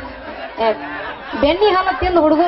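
Speech: a woman's voice through a stage microphone and PA.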